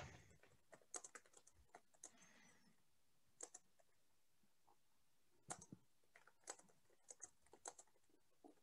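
Faint computer keyboard typing: scattered key clicks in short irregular runs with pauses between, busiest in the last few seconds.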